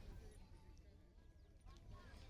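Near silence: only faint low outdoor background noise.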